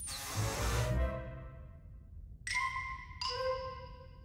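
A cartoon sliding metal door opening with a whoosh and a low rumble, then two ringing mallet-like musical notes, the second lower than the first.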